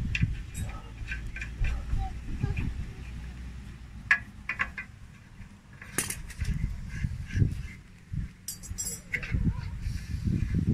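Handling noise with small scattered metallic clicks and taps as brass fittings are threaded by hand into an aluminium radiator tank, over a constant low rumble.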